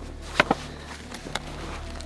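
Two sharp clicks close together about half a second in, then a fainter click, as gear is handled in the snow, over a low steady rumble.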